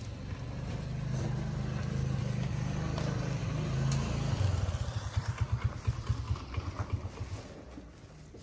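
A low motor-vehicle engine rumble that builds over the first few seconds, then turns into a regular putter of about six pulses a second before fading near the end.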